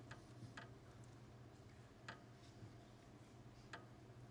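Near silence: room tone with a steady low hum and four faint, short clicks scattered through the span.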